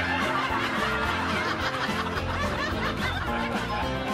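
Light comedic background music with a canned laugh track of many people chuckling and snickering over it.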